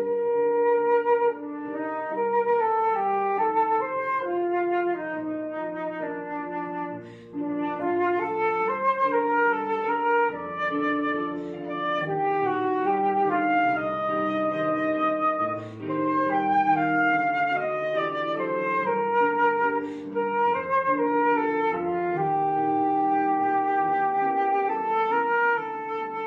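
Concert flute playing a melody over lower held accompanying notes, several pitches sounding together throughout.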